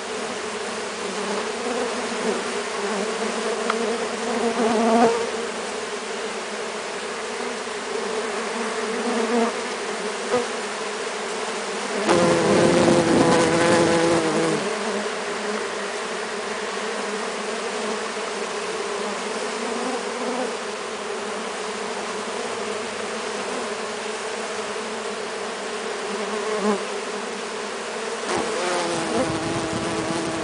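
Swarm of Melipona stingless bees buzzing steadily as they crawl and fly around a hand being fed sugar syrup. The buzz swells louder for about two seconds around twelve seconds in, and again briefly near the end.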